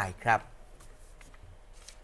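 A male Thai news narrator speaks the last syllables of a sentence, ending with the polite particle "khrap". After that there is only faint background noise with a few soft rustles and clicks.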